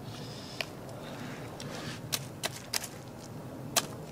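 Knife cutting through a smallmouth buffalo's thick, armour-like scales and skin: a series of sharp, irregular crunches and clicks, about seven, with a short scrape near the start.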